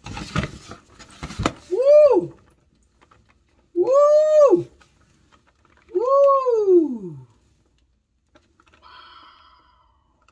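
A woman's three drawn-out exclamations of delight, "ooh", each rising and then falling in pitch, after a brief crackle of cardboard and plastic packaging being handled at the start.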